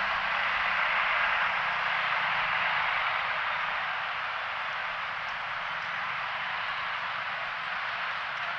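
Steady city traffic noise from a road crowded with motorcycles and a bus, engines and tyres blending into one continuous sound, with a low engine hum in the first few seconds. It eases a little about halfway through.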